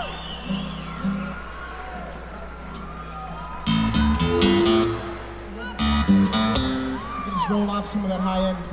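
Acoustic guitar strummed in two short bursts of chords, about four and six seconds in, as the band soundchecks, recorded from within the audience. Crowd shouts and whoops rise and fall around it.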